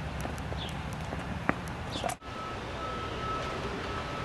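Outdoor background noise with a steady low rumble and scattered small clicks. There is a sharp click about one and a half seconds in, the sound drops out for a moment just after two seconds, and a faint steady high tone runs after that.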